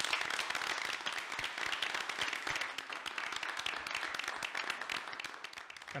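Applause: many people clapping together, a steady dense patter that slowly fades toward the end.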